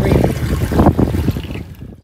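Wind buffeting the microphone and water slapping on a boat at sea, a dense rumbling noise that fades out near the end.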